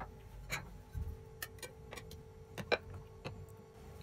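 Faint, irregular small clicks and light taps, about ten of them scattered through the few seconds, over a steady low hum.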